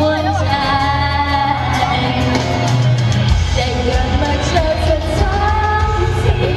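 A woman singing a song live into a microphone through a PA system, over an amplified backing track with a steady heavy bass.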